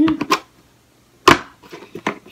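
A clear plastic art storage bin being opened by hand: a light plastic click, then one sharp, loud plastic snap about a second in, and a few faint clicks near the end.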